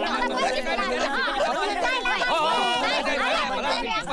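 Several people talking at once, an overlapping babble of voices.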